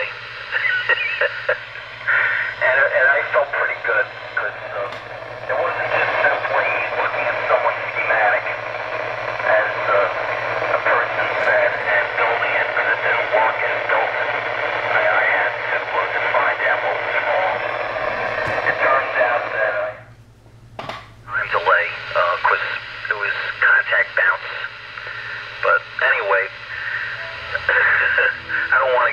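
A ham operator talking over a two-meter FM repeater, heard through a VHF radio's speaker as thin, band-limited speech over steady hiss from a weak, distant signal. The audio briefly cuts out about 20 seconds in, then the talk resumes.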